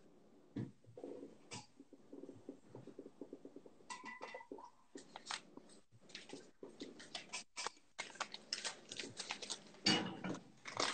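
Faint kitchen handling sounds: scattered light clicks and knocks, with a short run of rapid even pulses between about one and four seconds in and a brief thin tone near the middle.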